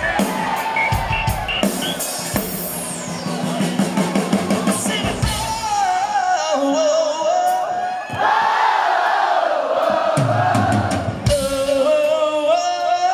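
Live rock band playing, a male lead singer leading a sing-along with the audience singing back; from about eight seconds in, many voices join in together.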